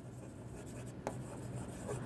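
Faint sound of a pen writing by hand on a classroom board, with a light tap about a second in.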